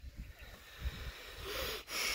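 A person breathing close to the microphone, with a breathy hiss in the second half, over a faint low rumble.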